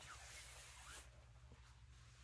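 Faint rustling of a birthday banner being unfolded and held up, fading out about a second in, leaving near silence with a low steady hum.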